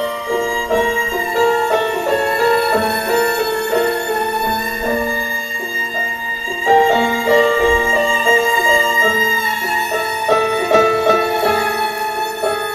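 Violin playing live, a quick figure of stepping notes over held higher tones, the music going without a break.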